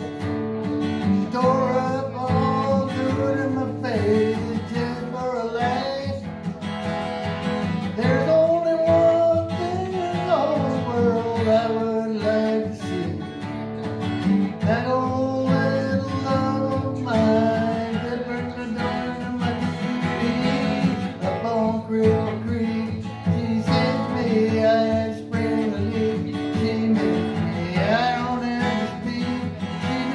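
Acoustic guitar played with a man singing along to it, a song carried on through a verse.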